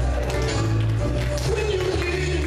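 Music with a steady drum beat and a deep bass line, playing as the soundtrack of a projected photo slideshow.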